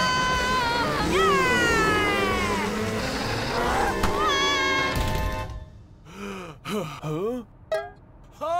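Cartoon soundtrack: music with pitched effects, including a long falling glide. About five and a half seconds in, the music drops out, leaving short, wordless, rising-and-falling vocal sounds from a cartoon character.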